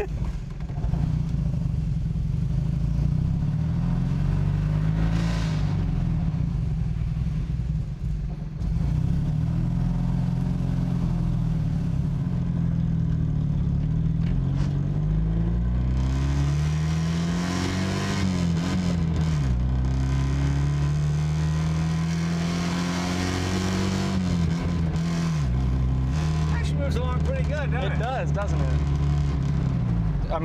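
A 1970–71 Honda Z600's small air-cooled two-cylinder engine running as the car is driven, breathing through its original muffler. Its note climbs and then drops several times as it pulls up through the gears and shifts.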